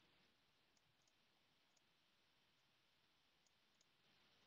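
Near silence, with only a few very faint, scattered ticks.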